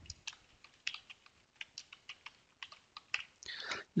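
Computer keyboard being typed on, a quick, irregular run of keystroke clicks as a short phrase is entered.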